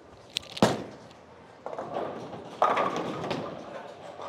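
A Hammer Scorpion Sting bowling ball lands on the wooden lane with a sharp thud and rolls down it with a rumble. About two and a half seconds in, it crashes into the pins with a clatter that dies away.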